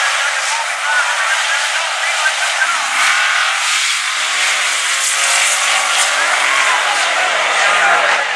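A Chevy El Camino and a Fox-body Ford Mustang drag racing: they launch off the line about three seconds in and accelerate hard down the strip, the engine note rising, over a steady crowd hubbub.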